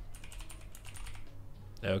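Typing on a computer keyboard: a run of light key clicks.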